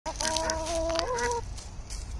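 Barred rooster giving one drawn-out call lasting just over a second, its pitch stepping up near the end.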